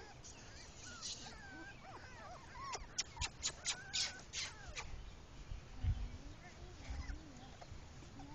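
English Pointer puppies, four weeks old, whimpering with short high squeaks. A quick run of sharp clicks comes about three seconds in, and low thumps follow near the end.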